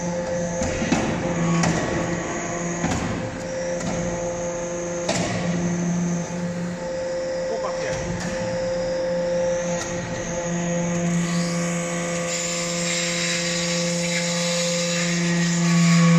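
Hydraulic swarf briquetting press running: a steady hum from its hydraulic power unit, with occasional knocks and clunks from the press.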